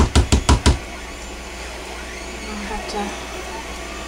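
A spatula knocked rapidly against the edge of a soap mold, about six taps a second, shaking off thick soap batter; the tapping stops under a second in, leaving a low steady hum.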